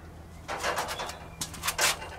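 Rustling handling noise as the camera is swung about and a hand picks up a screw bolt, with a few short scrapes or clicks near the end.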